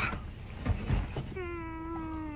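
A few soft knocks, then a single drawn-out voice-like call starting about a second and a half in, held on one pitch that sags slightly as it goes.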